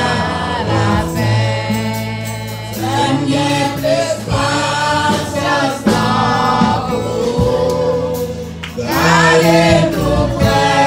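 Group of voices, men and women together, singing a gospel hymn over sustained low instrumental notes.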